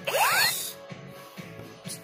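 Electronic sound effect of a battery-powered light-up toy blaster: one rising, hissy whoosh lasting about half a second at the start, then only a faint steady background.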